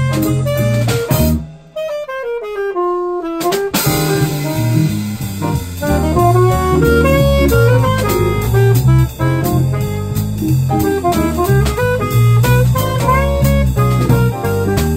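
Small jazz combo of alto saxophone, electric guitar, bass guitar and drum kit playing an up-tempo swing tune. About a second and a half in, the drums and bass stop for about two seconds while a single melodic line steps downward on its own. Then the whole band comes back in.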